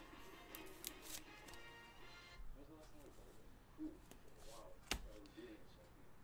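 Quiet handling of trading cards at a table: a few faint clicks and one sharper click about five seconds in, over faint background music.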